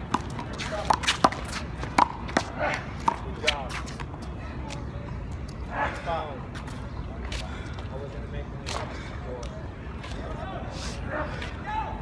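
Handball rally: a rubber handball slapped by hand and smacking off the concrete wall, about half a dozen sharp smacks in the first few seconds. After that the play stops, leaving only outdoor background and voices.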